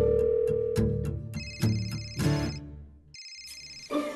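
Background music with a telephone ringing over it: a trilling electronic ring starts about a third of the way in, pauses briefly, and starts again near the end.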